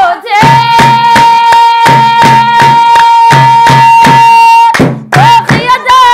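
Somali buraanbur song: women singing over a fast, steady beat of hand claps and drum. In the middle, a long high note is held level for about four seconds before the singing resumes.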